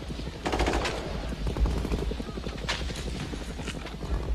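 Helicopter rotors chopping steadily, with sharp bursts of gunfire, the loudest about half a second in and two more near the end.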